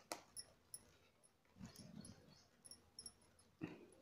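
Near silence broken by faint scattered clicks and soft rustles of plastic craft wire being threaded through a woven basket by hand, with one slightly louder short rustle near the end.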